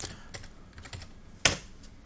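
Typing on a computer keyboard: a few light keystrokes, then one sharper, louder keystroke about one and a half seconds in.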